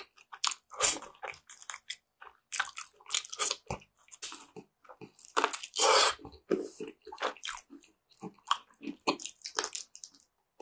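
Close-miked wet chewing and biting of soft, sauce-glazed meat pulled off the bone, in irregular smacking bursts, with a longer, louder wet burst about halfway through.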